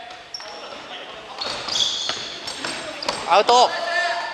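Futsal being played on a wooden gym floor: sneakers squeak in short high chirps, and the ball is kicked and bounces with sharp knocks. A player's short shout near the end is the loudest sound.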